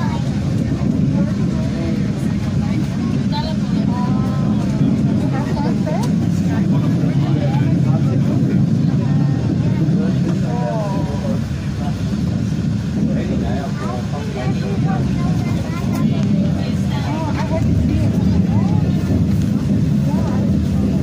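Steady low rumble of a passenger train running, heard from inside the carriage as it pulls into a station, with people's voices faintly in the background.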